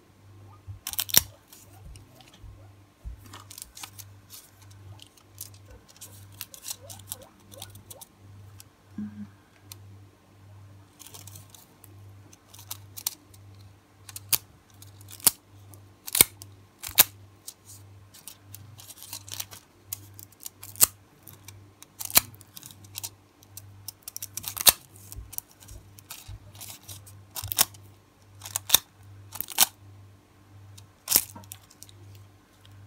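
Thin metallic transfer nail foil being handled, pressed onto a nail and peeled away, giving irregular sharp crinkles and crackles, some loud, with quieter rustling between them.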